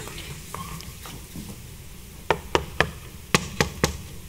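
Knocking on a wooden stage-set door: three quick knocks, then three more knocked back in answer about half a second later.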